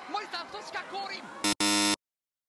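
A loud two-part buzzer, a short blip and then a longer buzz, cutting off sharply: a quiz-show style 'wrong' buzzer sound effect, marking a losing bet. Talk runs until the buzzer starts.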